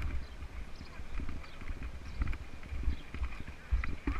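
Mountain bike tyres rolling and crunching over loose gravel, with irregular small clicks and crackles, over a low wind rumble on the microphone.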